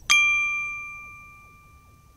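Logo-sting chime on a news channel's end card: a single bright, bell-like ding struck just after the start, ringing on one clear pitch with overtones and fading away over about a second and a half.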